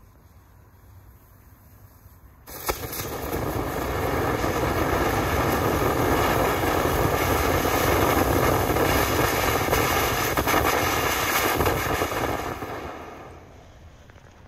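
Consumer firework fountain tubes (Magnus 'Tropical Colors', rearranged into a single fan) igniting together about two and a half seconds in, then spraying with a steady rushing hiss and no crackle or whistle for about ten seconds before dying away near the end. The near-simultaneous start shows the fast safety fuse lighting all the tubes almost at once.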